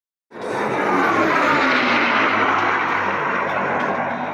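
Piston-engined P-51 Mustang fighters flying past, a loud steady engine drone with a faint falling whine as they go by. It cuts in suddenly just after the start.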